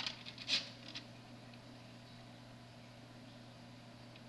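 A few short, soft rustling handling noises in the first second, then quiet room tone with a faint steady low hum.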